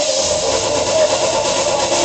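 Loud hardcore dance music from a DJ set played over a club sound system, running without a break.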